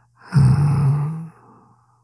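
A man's voiced, contented sigh, about a second long, tailing off into a breath.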